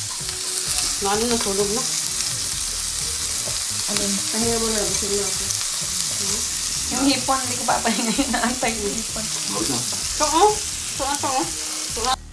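Shrimp and vegetables sizzling steadily on the hot plate of an electric tabletop grill while they are turned with tongs. Voices talk softly in the background.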